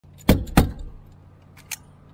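A stapler driving fasteners through synthetic roof underlayment into the wooden deck: two loud, sharp shots about a quarter second apart, then two lighter clicks about a second later.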